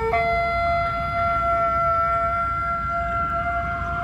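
A Weimaraner howling: one long, drawn-out howl held at a nearly steady pitch that sags slightly, like a siren.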